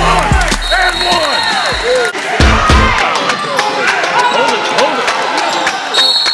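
Live basketball game sound in a gym: many short sneaker squeaks on the hardwood floor, a ball bouncing and spectators' voices, over background music.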